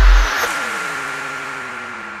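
Ending of a progressive house track: one last kick drum hit, then a tail of synth tones that slide down in pitch over a steady high tone while fading out.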